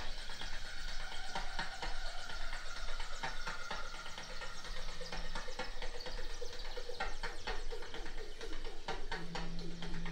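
Quiet stretch of scattered faint clicks and soft held tones. About nine seconds in, a low steady synthesizer note starts and holds.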